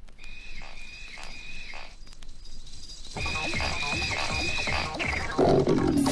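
Intro of an electronic rave track. A high synth tone bends and repeats about twice a second, and a kick-drum beat joins it about three seconds in. A falling sweep near the end leads into the full, louder track.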